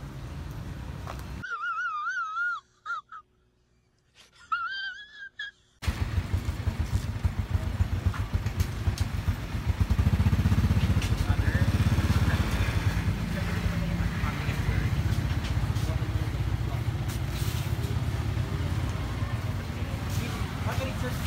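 Street traffic noise with a steady low rumble of passing motor tricycles and motorcycles, louder from about halfway. Before that there are a few seconds of near silence carrying a short wavering whistle-like tone, heard twice.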